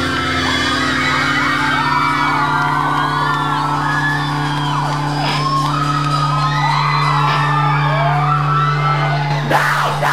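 Live rock band in a club holding a sustained chord while many voices in the crowd whoop and yell over it, with a sharp hit and change in the music near the end.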